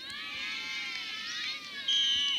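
Several high-pitched voices shouting and calling out at once during play on the pitch, starting suddenly. A whistle blast begins near the end.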